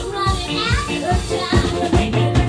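Live retro-pop band playing, with a female lead vocal singing over upright bass, piano, guitar and drums.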